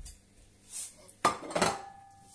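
A ceramic plate set down on the counter: two clattering knocks, one about a second in and another just after, the second leaving a brief ring.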